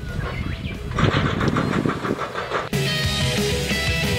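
Background music: a fast, evenly pulsing rhythmic passage, cut off abruptly about two and a half seconds in by an electric-guitar rock track.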